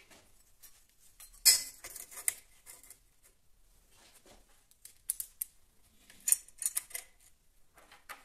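Sheet-steel serrated blades handled on a wooden table: a loud metal clank about one and a half seconds in as one blade is laid onto the other, followed by scattered clinks and scrapes of steel, washers and screws, with another cluster of clinks between five and seven seconds.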